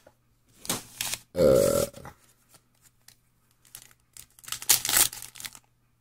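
A cardboard trading-card hobby box being opened and its foil packs handled. A short, rasping tear comes about a second and a half in, then light clicks, then a louder crinkle of foil wrappers near the end.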